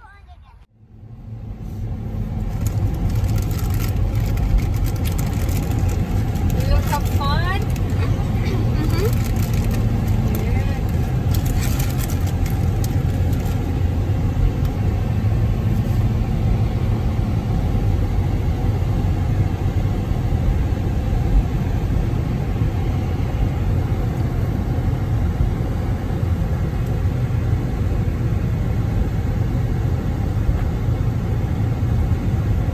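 Steady low rumble of road and engine noise inside a moving car's cabin, starting abruptly about a second in.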